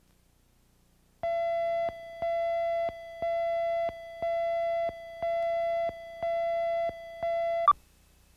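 Countdown tone on a TV commercial's slate leader: seven beeps at a steady middle pitch, one a second, each lasting most of a second. It ends with a short sharp click as the last beep cuts off.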